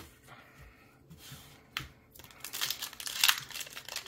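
Foil trading-card booster pack wrapper crinkling as it is handled and torn open. The crinkling starts about halfway in and grows louder, after a quiet stretch with a single short click.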